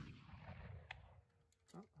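Faint echo of a .54-calibre black-powder carbine shot (Armi Sport 1863 Sharps) rolling away over open country, dying out within about a second and a half, with a faint tick about a second in.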